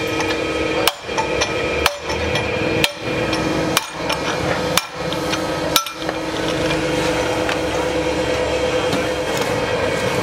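Hammer blows on a steel driver seating a valve seat insert into a truck cylinder head: six sharp metallic strikes about a second apart, then they stop.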